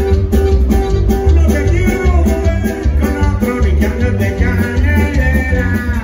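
Live norteño band playing: accordion, bajo sexto, bass guitar and drums over a steady bouncing bass pulse. A wavering melody line comes in higher up about two seconds in.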